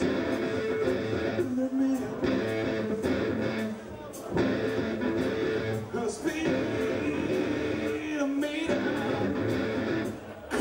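Stoner rock band playing live: heavy electric guitar riffs with bass over a steady drum beat, with a brief drop in level about four seconds in.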